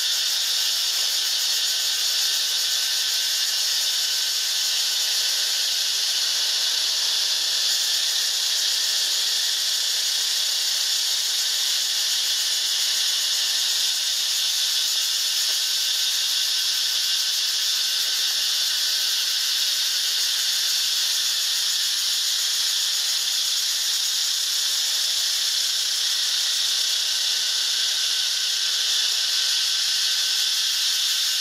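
A steady, high-pitched chorus of insects buzzing without a break, loud and unchanging throughout.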